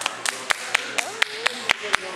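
Hand clapping, a steady run of sharp claps about four a second, over voices talking in a large hall.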